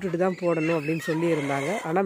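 A rooster crowing once, a long drawn-out call of about a second and a half, over a woman's voice.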